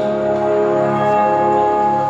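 Nighttime castle projection show soundtrack over loudspeakers: ringing bell tones held steady over a low swelling hum, between sung passages.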